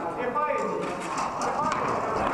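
Rattan practice swords knocking against shields and armour as several bouts are fought at once: irregular sharp knocks, with people talking in the background.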